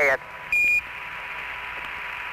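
Hiss of the Apollo 15 air-to-ground radio link, broken about half a second in by one short, high Quindar beep, about a third of a second long. That beep is the keying tone that marks the end of a transmission from Mission Control.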